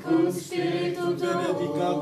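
Unaccompanied liturgical chant in Latin: voices singing held notes, with a falling phrase about one and a half seconds in.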